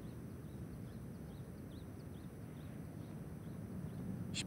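Quiet outdoor ambience: a low, steady background hum with faint, short, high bird chirps repeating several times a second, mostly in the first half.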